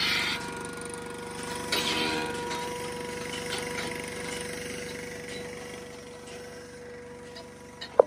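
Generator running steadily, driving the vacuum pump that powers a mobile milking machine, with a steady whine over a fast engine throb; it grows fainter toward the end.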